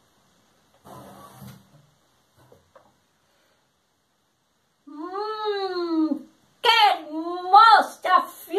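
Wooden doors of a puppet theatre box unlatched and swung open, with a brief rustle and a couple of faint knocks. About five seconds in, a person's voice starts making long, arching, wavering animal-like calls with no words, one then several in a row.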